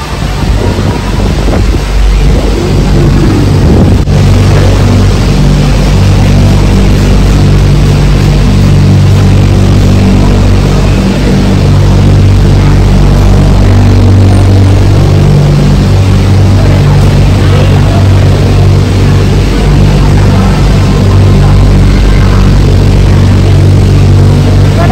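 Steady, loud low hum of cable car station machinery, the gondola line's drive and cable rollers running without a break.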